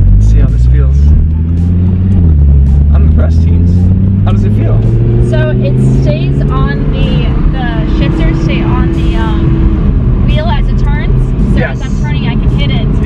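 Audi R8 Spyder's naturally aspirated V10 under acceleration. The revs climb, drop at an upshift about two seconds in, then rise slowly again through the next gear. Wind rushes through the open-top cabin.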